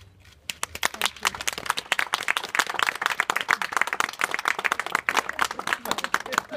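A small group of people clapping, starting about half a second in and carrying on steadily.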